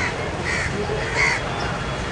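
Crows cawing: three calls in the first second and a half, over a steady low background murmur.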